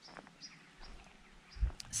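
Faint, short bird chirps, several of them, with a low rumble and a click on the microphone near the end.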